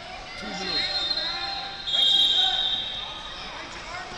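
Coaches and spectators shouting in a large arena hall during a wrestling bout, with a high, steady whistle blast about two seconds in that lasts just under a second.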